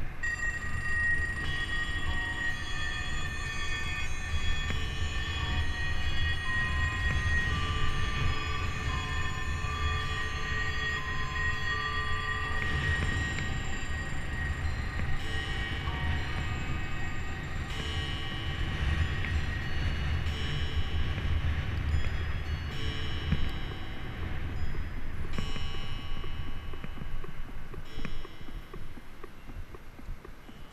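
Wind rumbling on the microphone of a camera worn by a moving cyclist, with several steady high tones held over it that change every few seconds.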